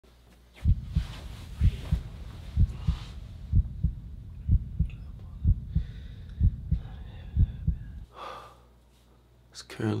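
Heartbeat sound effect: deep double thumps, about one pair a second, over a low steady hum, which stop about eight seconds in.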